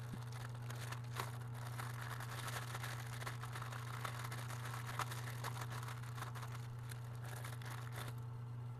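Thin clear plastic packaging crinkling and rustling as it is handled and pulled open around silicone resin molds, with many small crackles throughout. A steady low hum runs underneath.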